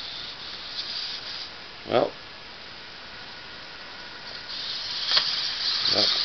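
Hobby servos of a hexapod robot whirring as its legs move: a hissy high whir, with a few faint clicks, that grows louder in the last second and a half over a steady background hiss.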